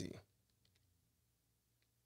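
Near silence with a few faint computer mouse clicks, a pair about half a second in and another near the end.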